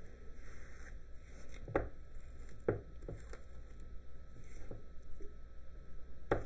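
Silicone spatula stirring granulated sugar into a thick whipped scrub mixture in a ceramic bowl. It makes soft, irregular scrapes and taps against the bowl, about one a second.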